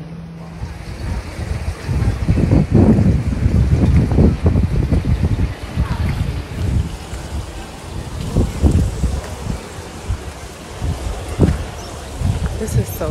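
Wind buffeting the phone's microphone in gusts: a loud low rumble that swells and fades unevenly, strongest in the first half and again near the end.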